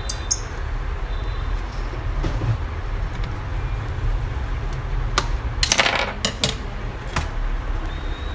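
Small sharp clicks and clinks from hard parts being handled during laptop reassembly, with a quick cluster of them about six seconds in, over a steady low hum.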